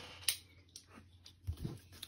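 Faint handling of a collectible jersey box as it is opened: a few light clicks, one sharper near the start and softer ones later, with quiet between them.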